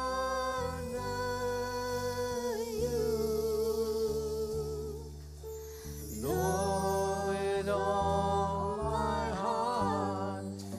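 Live worship band music: a singer holds long, wavering notes over bass guitar and keyboard, in two drawn-out phrases with a softer dip about halfway through.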